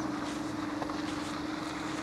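Steady low hum over faint, even outdoor background noise, with no distinct events.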